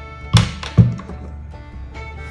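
Two dull knocks about half a second apart, over steady background music.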